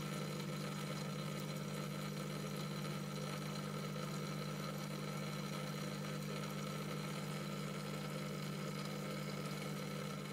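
A steady low hum that does not change, with no other sound on top of it.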